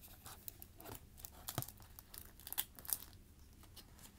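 Faint crinkling and rustling of thin plastic packaging being handled, with scattered light clicks and taps of small plastic items.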